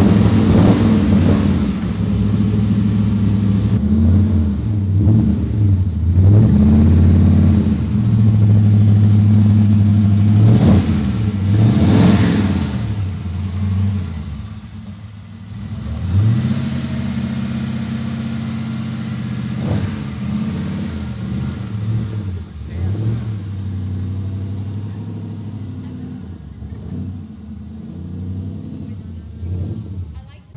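Shelby Cobra replica's V8 engine starting and being revved repeatedly, the pitch climbing and falling with each blip of the throttle. In the second half it runs more quietly with lighter revs.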